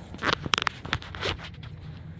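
A bed bug detection dog moving about on a bare concrete floor: a quick run of short scuffs and taps during the first second and a half, then quieter.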